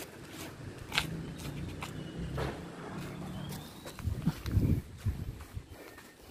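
Asian palm civet snuffling and nosing at the ground close by: a low, rumbling, noisy sound with a few soft clicks.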